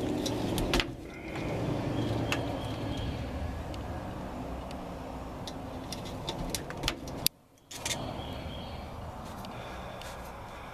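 Handling noise of hands and a hand tool working on thin wiring-harness wires: scattered light clicks and rustles over a steady low rumble. The sound drops out briefly about seven seconds in.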